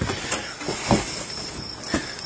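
Rustling and a few dull knocks of clothing and bodies moving against a body-worn camera's microphone as people walk, with a brief hiss of fabric brushing the mic about half a second in.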